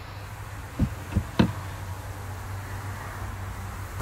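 Power-folding third-row seats of a 2021 Infiniti QX80 lowering: a steady electric motor hum, with three short knocks about a second in.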